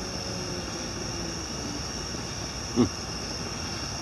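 Steady rushing of a gas fire pit's flame with crickets chirping in a constant high band behind it, and one short gliding sound just before the three-second mark.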